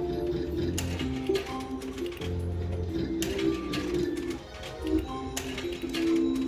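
A Novoline slot machine playing its electronic free-game melody, broken by sharp clicks as the reels stop on each automatic free spin, a few times.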